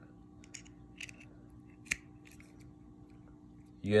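A few small clicks and taps of a plastic USB flash drive being handled and pushed into a USB adapter's socket, the sharpest click just under two seconds in, over a faint steady hum.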